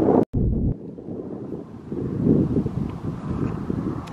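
Wind buffeting the camera microphone: an uneven low noise that swells and eases, cut by a split-second dropout to silence just after the start and quieter after the first second.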